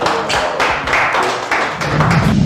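Audience applauding, a dense patter of many hand claps.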